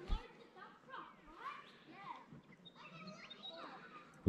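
Faint, distant voices of children at play, with a brief low thump right at the start.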